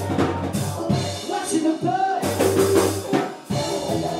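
Live rock band playing: electric guitars and drum kit over bass, with the sound dropping out briefly a little before the end and coming straight back in.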